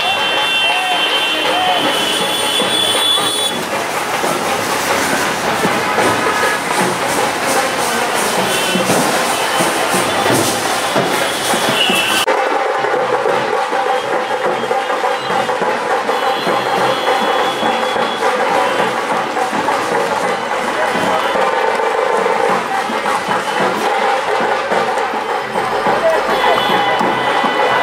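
Street procession noise: band music mixed with the voices of a crowd and passing traffic. The mix changes abruptly about halfway through.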